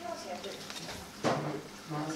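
Voices talking in the background, too indistinct to make out, with one sharp knock a little over a second in.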